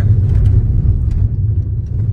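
Steady low rumble of road and engine noise from a car moving downhill, with no distinct events.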